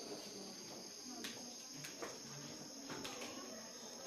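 A steady high-pitched whine over faint room noise, with a few soft clicks.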